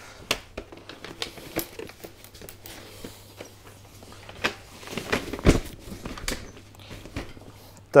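A stroller seat unit being fitted back onto its frame: the fabric canopy rustles and plastic parts click as the seat is lowered and latched in, with two sharper knocks a little past the middle.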